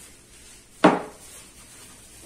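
A single sharp knock a little under a second in: a small glass shot glass set down on a wooden tabletop.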